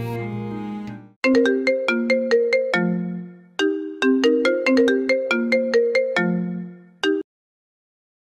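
A mobile phone ringtone: a chiming melody of short struck notes that plays through twice, then cuts off suddenly as the call is answered. Soft background music fades out just before it starts.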